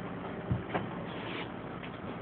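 Faint handling noise as a glass jar is held and moved close to the camera: a soft knock about half a second in and a short click just after, over a low hiss.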